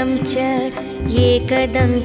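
Indian devotional music: a melody of bending, sliding notes over a steady held drone, in the style of Carnatic music.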